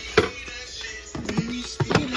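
Background music, with a sharp hit just after the start and another near the end.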